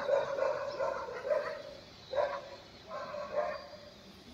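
A dog barking several times, each bark short and separate.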